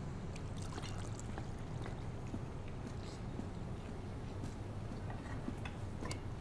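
Faint, scattered footsteps and light knocks of a person walking and going down wooden stairs while carrying a plastic container, over a steady low hum.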